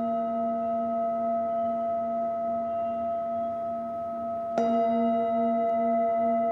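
Metal Tibetan singing bowl ringing on with a steady chord of several tones from an earlier mallet strike. It is struck again with the mallet about four and a half seconds in; the ringing grows louder and the lower tones waver.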